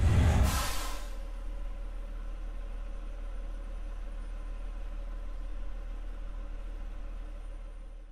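Outro sting: a loud rush of noise in the first second, then a steady low drone with a few held tones that fades away at the very end.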